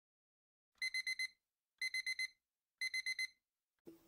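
Electronic alarm clock beeping: three bursts of four quick, high beeps, about one burst a second.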